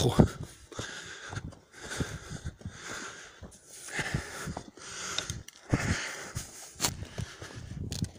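A man breathing hard and fast, one loud breath about every second, with short knocks of footfalls on a stony path: out of breath from a steep uphill climb.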